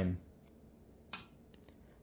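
A single sharp click about a second in, from a trading card being handled in a clear plastic holder, with a few faint ticks around it.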